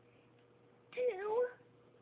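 A brief high-pitched wordless voice about a second in, about half a second long, its pitch dipping and sliding back up, after a moment of near quiet.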